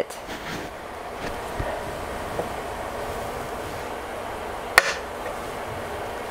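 A single sharp snip a little under five seconds in, as pliers cut the top off a brad nail sticking up out of a wooden tabletop, over a steady background noise.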